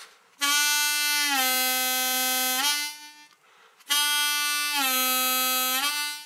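G diatonic harmonica's 2-hole draw note bent down a whole step, played twice. Each time the note starts unbent, drops in pitch about a second later and is held bent before it is released.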